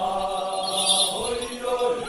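A group of dancers chanting together in unison, holding and sliding long sung notes as they dance hand in hand. A short, bright, hissy burst rises over the voices about a second in.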